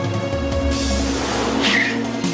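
Film background music over a Range Rover's tyres on paving as it turns, with a short tyre squeal near the end.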